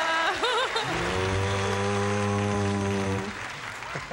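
Studio audience applauding. A steady, flat electronic tone is held for about two seconds in the middle.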